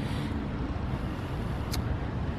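Steady low outdoor background rumble with no distinct source, and a single short click about a second and a half in.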